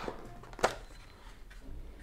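Quiet handling of cardboard phone packaging, with one sharp tap a little past half a second in.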